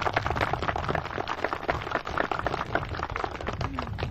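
Audience applauding, a dense patter of many hands clapping, with a low rumble underneath.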